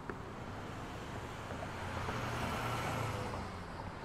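City traffic ambience: a steady wash of road noise, with a vehicle passing and growing louder for a second or so in the middle.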